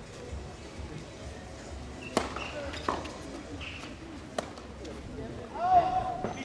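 Tennis ball struck by rackets during a rally: three sharp, separate pops spread over a couple of seconds. A short voice call near the end is the loudest sound.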